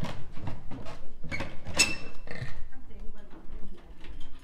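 Indistinct voices and a run of irregular knocks and steps on a wooden floor. About two seconds in there is a short, bright metallic clink that rings briefly.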